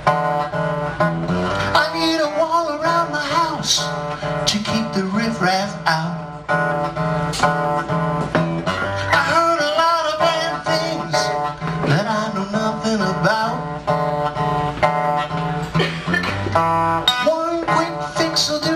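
Acoustic guitar strummed steadily in a live solo song, with a man singing over it in stretches.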